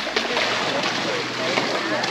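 Steady rush of wind on the microphone mixed with pool water, with faint voices in the background.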